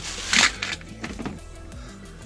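A plastic bag crinkling briefly as a hand reaches into it, over quiet background music.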